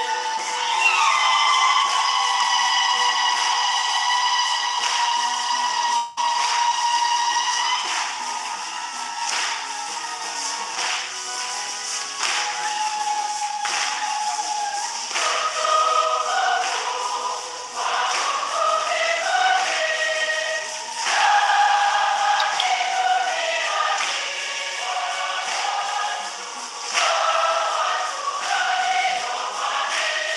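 Church choir singing a hymn over a steady beat, holding long notes at first and then moving into a flowing melody about halfway through.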